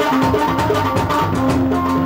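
Live band music with drums and percussion, held notes sounding over a steady beat.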